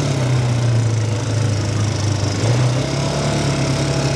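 ATV (quad bike) engine running steadily while riding along a dirt track; its note steps up slightly about halfway through.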